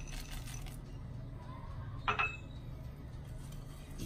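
Chopped walnuts tipped from a small glass jar into thick brownie batter, with faint soft tapping at first. About two seconds in comes one sharp clink against the glass mixing bowl with a brief ring.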